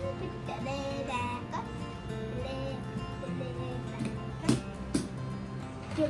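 Background music with a steady melodic line, broken near the end by two sharp knocks about half a second apart.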